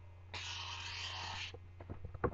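Diabolo string rubbing on the spinning axle: a hissing scrape lasting about a second that stops abruptly, followed by a few light knocks near the end.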